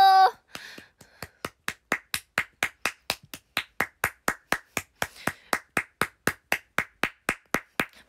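One person clapping at a steady pace, about four to five claps a second, as congratulations. A sung note cuts off just before the clapping starts.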